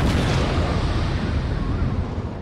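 A boom-like whoosh transition sound effect: a dense rumbling noise that starts suddenly and fades away steadily.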